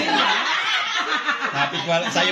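A group of people laughing and talking over one another, with breathy chuckles and snickers.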